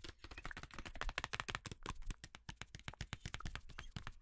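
Long fingernails tapping rapidly on a cardboard parchment-paper box, in quick, irregular taps of several a second.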